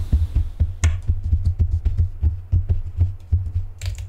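Rapid, irregular knocks and bumps on the desktop, picked up by the Saramonic SR-MV2000 USB microphone on its shock-absorbing magnetic tabletop stand. They come through as a run of deep, dull thuds, with one sharper knock about a second in.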